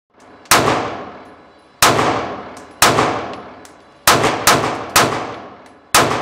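Springfield Armory Hellcat 9mm pistol firing seven shots, first three spaced about a second apart, then a quicker string of three about half a second apart and one more at the end, each shot echoing with a long reverberant decay in an indoor range.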